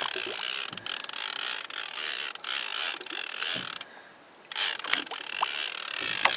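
Conventional fishing reel being cranked, its gears running steadily as line is wound in against a hooked yellowtail amberjack. The winding stops briefly about four seconds in, then starts again.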